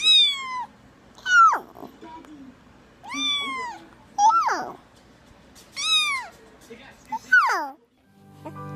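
A cat meowing repeatedly: about six drawn-out meows a second or so apart, some arching up and falling, others sliding steeply downward.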